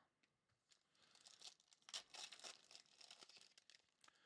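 Faint crackling of a foil trading-card pack wrapper being torn open and crinkled by hand. It starts about a second in and goes on irregularly until just before the end.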